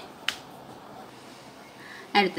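A single sharp click about a third of a second in, then only faint room noise.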